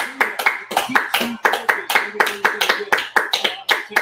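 Two people clapping their hands in a steady run of quick claps, about five a second, over TV commentary.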